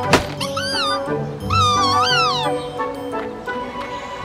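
Cartoon background music with two high, squeaky, pitch-bending creature vocalizations, the second one longer, and a short knock just after the start.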